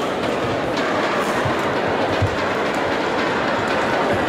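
Badminton rally: sharp racket strikes on the shuttlecock and footfalls on the court, several in quick succession, over a steady murmur of the arena crowd.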